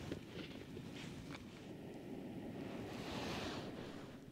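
Jetboil MiniMo gas stove burning under a pot of water at a rolling boil: a steady soft rush with a few faint ticks, mixed with wind on the microphone.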